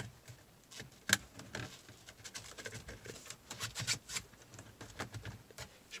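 Plastic dashboard trim on an Audi Q5 being pried loose by hand with a plastic trim tool: a sharp click about a second in, then scattered light clicks and rustling as the retaining clips let go.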